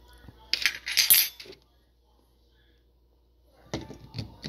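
A metal fork clinking and scraping in a glass jar of banana peppers for about a second, starting about half a second in, then a couple of sharp clicks near the end.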